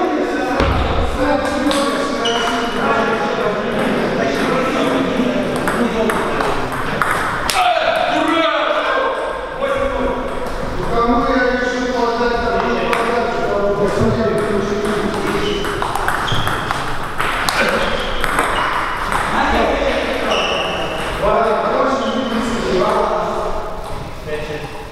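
Table tennis ball pinging off the table and rubber-faced paddles at intervals during play, with people talking in the hall throughout.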